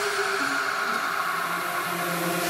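Beatless stretch in a deep house mix: a steady white-noise wash with a few faint sustained synth tones and no drums.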